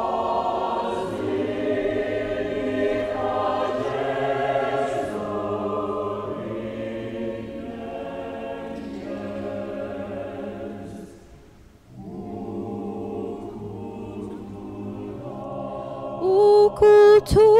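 Mixed church choir singing sustained notes in parts under a conductor. The singing falls away briefly near the end of a phrase and then picks up again.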